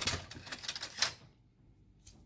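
Rapid clicking and rustling of plastic-wrapped snacks and plastic cutlery being rummaged through in a basket, stopping just over a second in.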